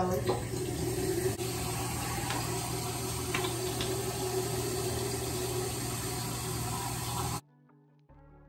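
Bathroom sink tap running water into the basin, a steady rush that cuts off suddenly near the end.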